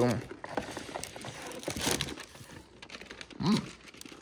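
Rustling and crinkling of plastic-wrapped snack packets and cardboard being handled in an open box, loudest about two seconds in. A short bit of voice comes at the very start and another brief vocal sound a little after three seconds.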